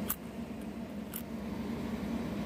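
Two faint clicks of nickels touching as one coin is slid off a stack of nickels and turned over in the fingers, over a low steady hum.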